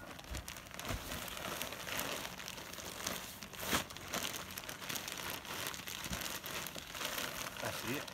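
Plastic potting-mix bag crinkling and rustling as it is handled and emptied into a wheelbarrow, with the mix spilling out; irregular crackles throughout and one sharper, louder crackle a little before the midpoint.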